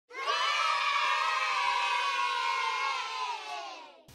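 A group of voices, likely children, cheering together in one long shout that drifts slightly down in pitch and fades out near the end.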